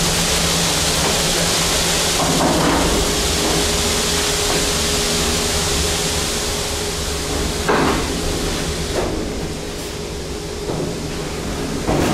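Heavy steel bi-parting freight-elevator hoistway doors pulled down and shut by hand, a loud sliding rush for several seconds, then a bang about eight seconds in as the panels meet, with a few more knocks after it and at the end.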